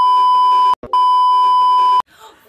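Television colour-bars test tone: one loud, steady, pure beep with a faint static hiss behind it, broken off for a split second a little under a second in and then resuming.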